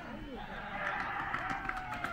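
Indistinct, distant voices of players and spectators calling out and chatting around a baseball field.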